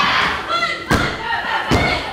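Two heavy thuds on a wrestling ring's canvas mat, a little under a second apart, with shouting voices around them.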